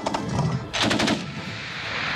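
Small-arms gunfire from rifles: a sharp shot at the start, then a quick burst of several shots about three-quarters of a second in.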